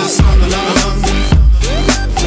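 Instrumental stretch of a rap track: heavy bass beats with sliding synth notes and no vocals.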